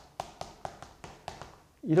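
Chalk clicking against a chalkboard while characters are written: a quick run of sharp taps, about four or five a second, that stops about a second and a half in.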